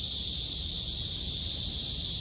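Steady high-pitched hiss of an outdoor insect chorus, unbroken and even, with a low rumble underneath.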